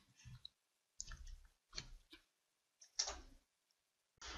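Faint, scattered clicks, about five of them, the loudest about three seconds in.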